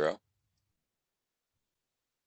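A man's voice ends the word "zero", then near silence broken by two faint clicks, about a second apart, as digits are handwritten on a digital whiteboard.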